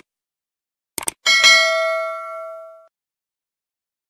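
Subscribe-button animation sound effect: two quick mouse clicks about a second in, then a bell ding with several ringing pitches that fades out over about a second and a half.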